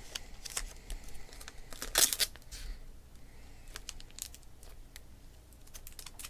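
Hands handling trading cards and their plastic holders and packaging: scattered light clicks and rustles, with a louder crinkling, tearing burst about two seconds in.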